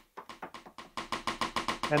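A sampled rim-shot drum hit from the DJ software's sampler, repeating rapidly at about ten hits a second and growing louder.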